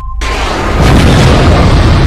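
Explosion sound effect: after a split-second gap, a deep boom swells up over about half a second and keeps going as a heavy low rumble.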